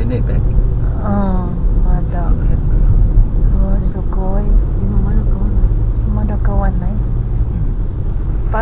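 Steady low road and engine rumble inside a moving car's cabin, with voices talking on and off.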